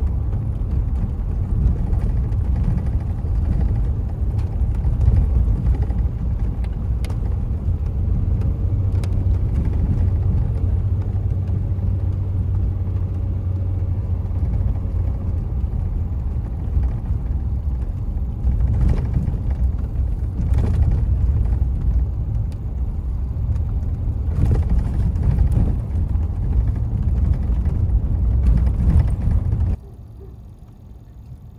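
Car driving along a lane, heard from the vehicle: a steady low rumble of engine and tyres, with a few brief thumps in the second half.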